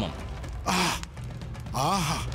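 A short, breathy vocal exclamation about two-thirds of a second in, then a voice rising and falling near the end, over a low steady background music drone.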